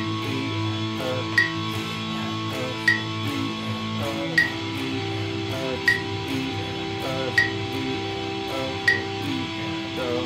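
Electric guitar strumming power chords in a fast sixteenth-note pattern at a slow 40 beats per minute, with a sharp metronome click on each beat about every second and a half. The chord changes about four seconds in.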